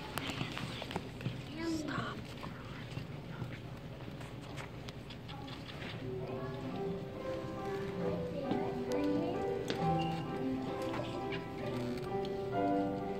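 Audience murmur and rustling, then about halfway through music begins with held notes at several pitches shifting in steps: the opening of a school choir's song.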